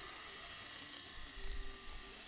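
Quiet, steady hiss and low drone from a TV drama's soundtrack, with a few faint held tones.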